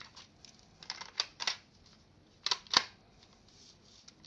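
Plastic clicks and clatter of a cassette being set into a Sony Walkman WM-GX322 and its cassette door snapped shut: a few light clicks about a second in, then two sharp clicks in quick succession just past the middle, the loudest sounds.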